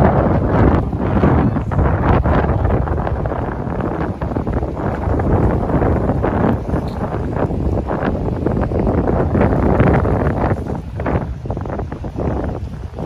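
Wind buffeting the microphone: a loud, rough rumble that rises and falls in gusts.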